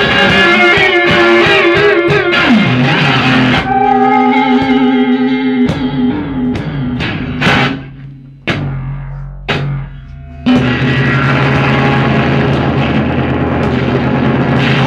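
Electric guitar played live through an amplifier with effects and distortion: a dense, sustained wash of notes, then a few held tones, then several sharp single struck hits with quieter gaps between them from about six to ten seconds in, before the full, dense sound comes back.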